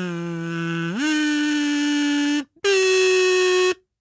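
A man humming a short sign-off tune. A low held note slides up to a higher one about a second in, and after a brief break a still higher note is held and then stops.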